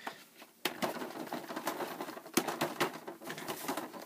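Quick irregular tapping and rustling as a hand hits and handles a plastic animated witch prop and its fabric cape, starting about half a second in. The hits do not set the prop off: it is not sound activated.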